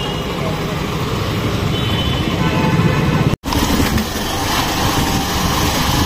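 Hero Glamour Xtech's 125 cc single-cylinder engine running as the motorcycle moves slowly, with steady road and traffic rumble around it. The sound drops out for an instant about halfway through at a cut, then carries on as the bike rides on.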